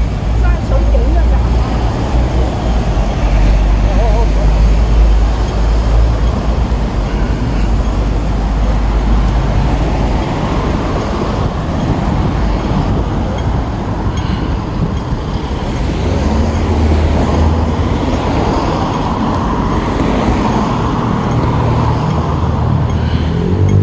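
Busy city street traffic: buses, taxis and cars running and passing in a steady, loud mix with a deep hum, and passers-by talking in the background.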